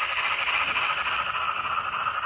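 Sound-equipped N scale Broadway Limited Paragon3 Light Pacific steam locomotive running, its onboard speaker giving a steady steam hiss with no separate chuffs to be picked out.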